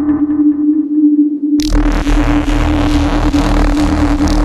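Electronic music: a steady synth drone holds under a pulsing pattern that fades away, then about one and a half seconds in a dense, hissing layer and a deep bass come in suddenly.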